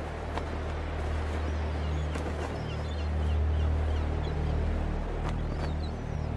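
Wind rumbling on the microphone, steady with slow swells, with a few faint high bird chirps about two seconds in.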